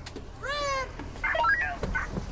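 A high-pitched young person's voice giving one short meow-like cry that rises and falls, about half a second in, followed by a few brief high vocal sounds.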